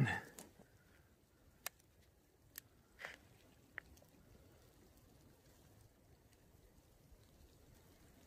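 Quiet camera handling, with a handful of faint, sharp clicks spread over the first four seconds as a camera is held and operated close to the ground. A brief soft sound comes at the very start.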